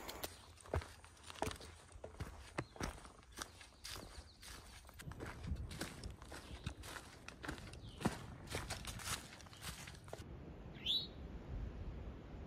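Footsteps crunching through dry fallen leaves on a forest trail, an uneven run of steps. Near the end, after a cut, a bird gives one short call that slides in pitch.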